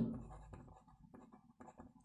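Pen writing on paper: faint, short scratching strokes as a word is written out by hand.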